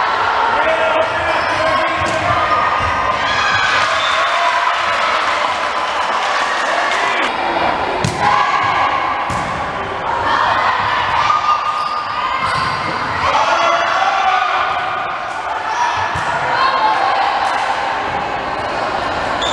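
Volleyball rally in a gymnasium: sharp hits of hands and arms on the ball at irregular intervals, under near-constant shouted calls from the players.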